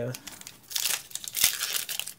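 Foil wrapper of a Pokémon booster pack crinkling as it is picked up and handled, a crisp crackling with one sharp crack about one and a half seconds in.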